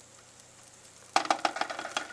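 Eggs frying in butter in a nonstick frying pan. The pan is faint at first, then about a second in a burst of loud crackling sizzle starts and keeps going.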